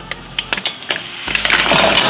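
Frozen mixed seafood tipped into a wok of hot olive oil: a few sharp crackles, then, about two-thirds of the way in, a loud sizzle as the frozen pieces hit the oil.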